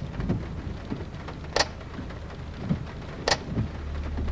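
Steady rain with a low rumble beneath it, cut by a sharp tick that comes three times, about every second and three-quarters.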